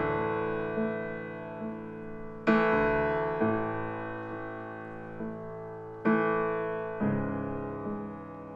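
Stage keyboard playing slow piano chords, each struck a few seconds apart and left to ring and fade, with softer single notes between them.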